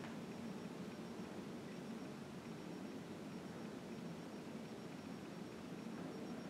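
Faint steady hiss of room tone in a small room, with a thin high steady tone.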